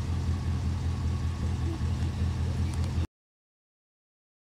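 Pickup truck engine idling with a steady low rumble, heard from inside the cab. The sound cuts off suddenly about three seconds in.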